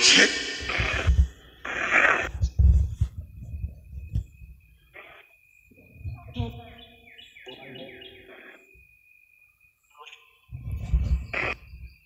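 Evening outdoor ambience of birds chirping, with a steady high insect trill and a run of short falling bird calls in the middle. Short garbled voice-like bursts come from a spirit-box app's speaker near the start and again near the end, with low rumbles of footsteps and handling.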